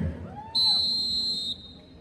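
A single steady, high-pitched whistle blast lasting about a second.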